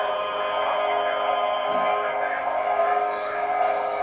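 Hymn music with long, steady held chords, heard over a radio broadcast.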